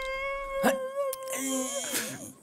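A cartoon character's long, high-pitched vocal whine held on one slightly wavering note, with two short clicks in the middle and a lower note joining near the end.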